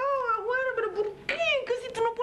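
A woman wailing in frustration: a long, high-pitched, wavering cry that breaks off briefly about a second in, then starts again on a falling note.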